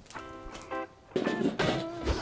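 Quiet background music with held notes, dropping out briefly about halfway through.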